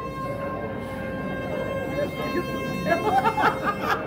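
Soft background music with a long held tone, and audience voices chattering, louder near the end.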